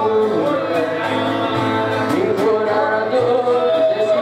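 A man singing live into a microphone with his own acoustic guitar accompaniment, the voice carrying a flowing melody with pitch glides over the guitar.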